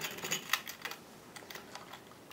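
A quick run of light clicks and taps from handling scissors and thin picture-hanging wire at the back of a stretched canvas, thickest in the first second and sparser after.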